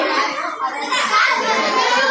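Hubbub of many children's voices talking and calling out at once.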